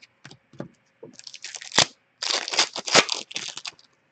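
Hockey card pack and cards being handled: a few light clicks, then two spells of crinkling and tearing, the second longer, typical of a foil pack wrapper being torn open and the cards slid out.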